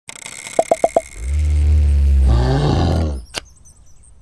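Cartoon sound effect of a bear roaring: one deep, loud roar lasting about two seconds, after four quick knocks and before a single sharp click.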